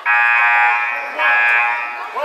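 Gym scoreboard horn sounding in two long blasts: one of about a second, a brief dip, then a second blast of nearly a second.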